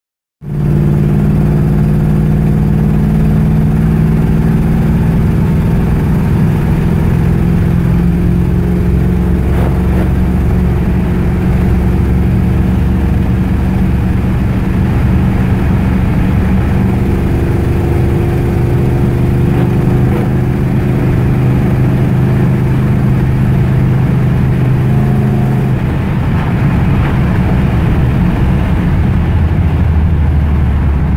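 A 1969 Chevrolet Impala's engine running steadily under way, heard from inside the cabin with road noise. Its note shifts a few times as the speed changes.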